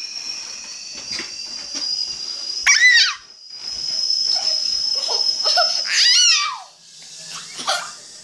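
Small child squealing in a very high pitch twice, about three and six seconds in, with giggling between. A steady thin high-pitched tone sounds behind her for a couple of seconds in the middle.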